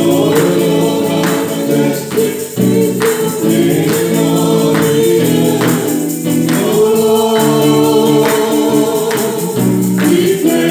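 Live gospel worship song: singers at microphones over an electric guitar, with a steady percussive beat a little under once a second.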